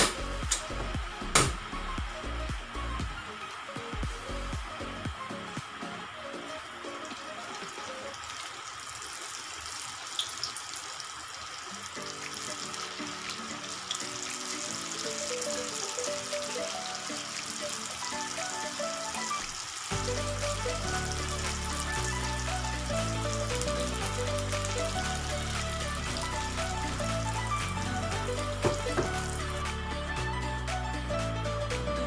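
Cassava turon, rolls in lumpia wrappers, sizzling in a pan of hot frying oil, with background music playing over it. The sizzle thickens about a third of the way in as the rolls go into the oil, and there are two sharp clicks near the start.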